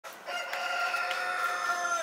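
A long, high call held on one steady pitch, starting a moment in and lasting about a second and a half.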